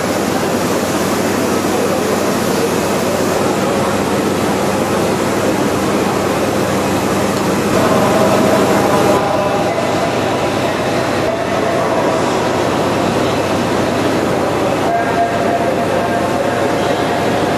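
Steam-hauled passenger train on the move: a loud, steady rumble of the train running on the rails, with a faint ringing tone coming in about halfway through.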